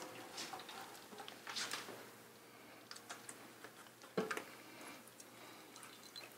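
Quiet handling of a metal roasting pan as pan juices are poured from it into a ceramic gravy boat: a few faint taps and one sharper knock about four seconds in.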